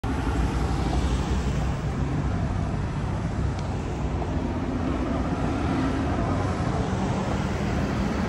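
Steady city street traffic noise: a continuous rumble of car engines and tyres.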